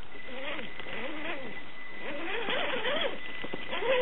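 Axial AX10 Scorpion RC rock crawler's electric motor and gears whining, the pitch swelling up and down every second or so as the throttle is worked over rocks, over a steady thin high tone.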